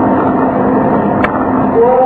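Steady, dense noisy hum with a faint low drone under it. Near the end a man's chanted recitation starts on a long held note.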